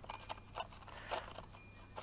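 Paintbrush bristles sweeping crushed stone grit across paving into a plastic dustpan: faint, short scratchy strokes, several in a row.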